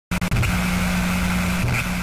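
Television static sound effect: a steady hiss over a low electrical hum, with a few crackling clicks at the start.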